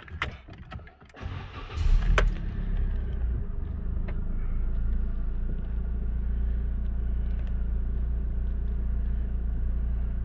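A few key clicks, then a 2003 Citroën C2 VTR's 1.6 engine is started: it cranks and catches about two seconds in, then settles into a steady idle.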